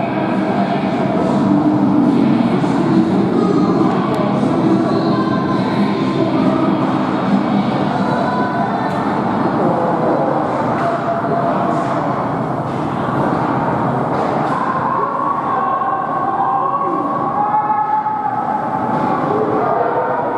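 Ice hockey game in an indoor rink: a steady din of spectators' and players' voices calling out, with scattered sharp clicks of sticks and puck on the ice.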